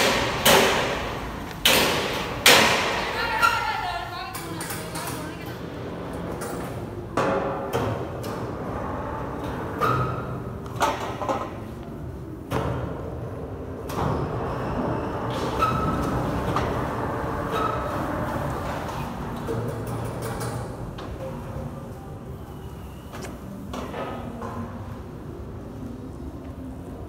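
Several sharp knocks or thumps in the first few seconds, then indistinct voices over steady background noise.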